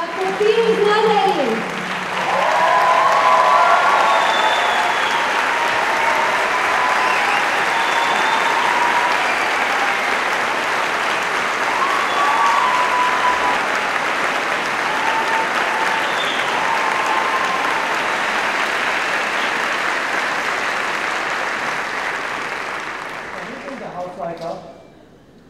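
A large audience applauding steadily, with scattered voices calling out over the clapping; it dips briefly near the start and fades toward the end.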